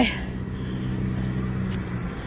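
Street traffic at an intersection: a car engine running with a steady low hum.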